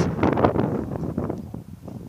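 Wind buffeting the microphone, a low, gusty rush that dies down over the second half.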